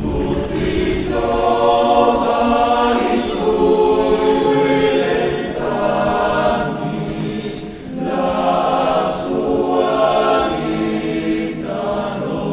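Choral music on the soundtrack: a choir singing slow phrases of long held notes.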